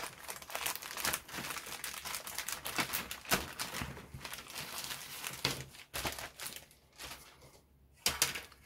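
Clear plastic bag crinkling and rustling as a plastic model-kit sprue is slid out of it by hand, in dense irregular crackles that die away over the last second or two.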